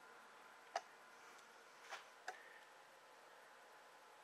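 Near silence: faint room tone and hiss with three faint short clicks, one about three quarters of a second in and two more close together around two seconds in.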